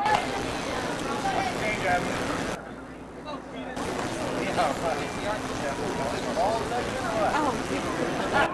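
Indistinct chatter of several voices over a steady hiss; the hiss drops out briefly about three seconds in.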